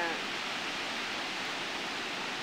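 Ocean surf washing on a beach: a steady, even hiss of breaking waves.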